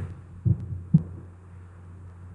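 Steady low electrical hum in a pause between spoken sentences, with two short, soft low thumps about half a second and one second in.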